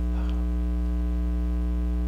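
Steady electrical mains hum with a stack of evenly spaced overtones, unchanging throughout.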